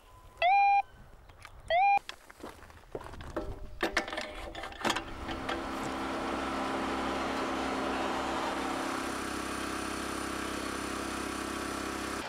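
Handheld cable locator receiver giving two short beeps, each sliding up quickly to a steady tone, as it picks up the sonde pulled through the buried pipe. A few seconds later, after some clicks, a steady engine-driven machine drone builds up and holds: the cable-feeding equipment running.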